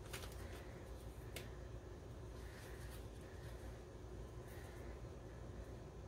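Quiet room tone with a steady low hum and a few faint soft clicks of hands handling mini marshmallows and pressing them into soft chocolate.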